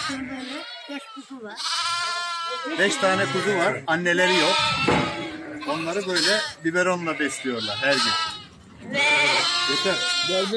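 Sheep and lambs bleating: many overlapping, quavering calls from the flock, with a long loud call about two seconds in and another near the end.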